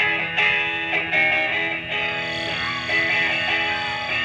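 Live rock band starting a song, led by electric guitar chords struck in a repeating figure that begins suddenly at the very start.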